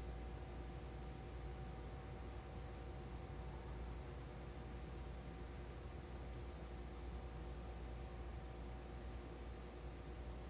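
Room tone: a steady low hum with faint hiss and no distinct sounds.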